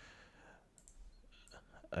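A few faint clicks of a computer mouse or keyboard in a quiet room.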